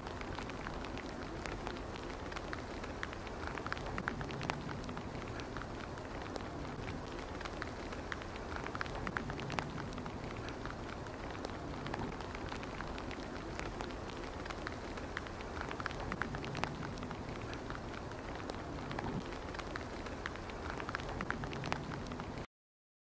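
Steady outdoor hiss with many small, irregular ticks and crackles throughout, of the kind light rain makes pattering on leaves.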